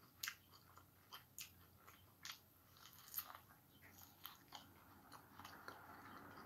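Chewing a mouthful of corn on the cob, with scattered sharp crunchy clicks. The loudest click comes about three seconds in.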